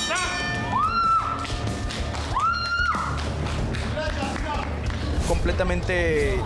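Background music with a steady bass, over which a voice gives two long high shouts, about a second in and again around two and a half seconds.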